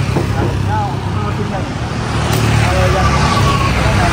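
Steady low rumble of motor vehicles running on the street, with faint voices in the background.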